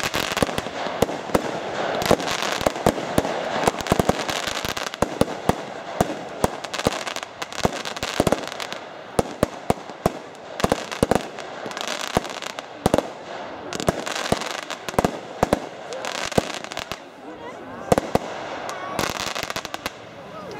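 Wolff Goblin Nation fireworks firing a rapid, irregular run of shots: launch thumps and aerial bursts several times a second over a continuous crackle. It thins out near the end, with a last cluster of bangs.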